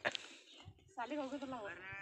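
One long, wavering bleat from the sheep-and-goat flock, starting about a second in and rising in pitch at its end.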